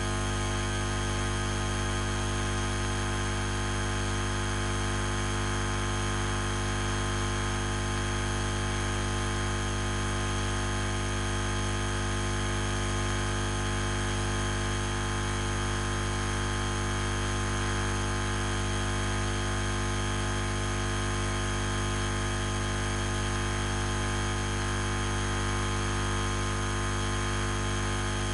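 Steady electrical hum and hiss: several constant tones over an even noise floor, with nothing else happening.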